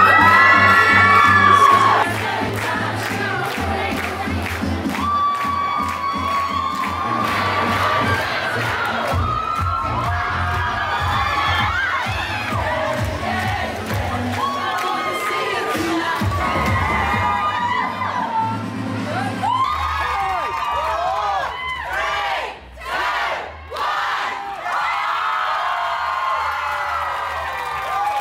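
A large crowd, mostly young women, cheering, screaming and shouting excitedly, loudest in the first two seconds, with two brief drops in loudness a little past the middle.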